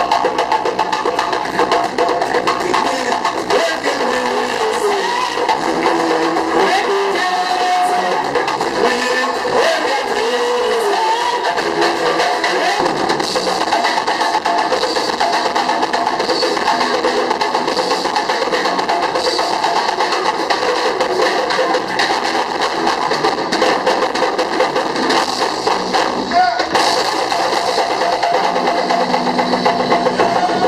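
Live band playing a steady, dense rhythm on djembe and conga hand drums with a drum kit and guitar, and a voice singing or calling over it for a stretch in the first half.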